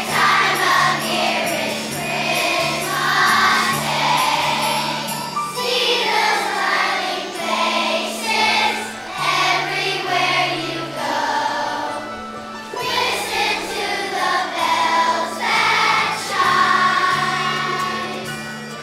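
A large children's choir singing a Christmas song in unison over a backing track with a steady bass line and jingle bells.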